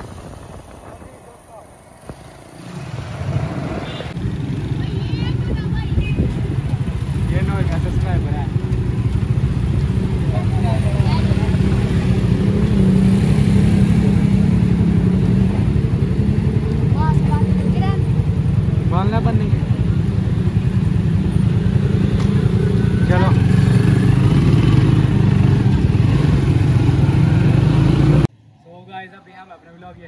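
Motorcycle engine running steadily while riding along a street, with road and wind rumble, and a few short voices calling out over it. It cuts off abruptly near the end, leaving quieter talk.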